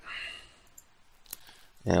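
A single computer mouse click about a second and a half in, after a short, soft breathy noise at the start.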